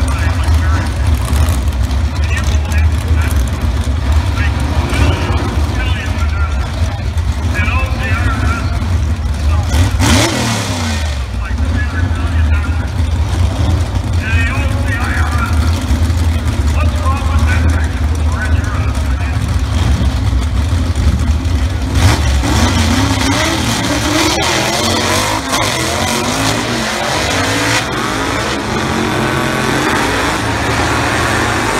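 Vintage gasser drag cars' engines running at the starting line, then launching about two-thirds of the way in and accelerating hard down the strip, the engine pitch climbing.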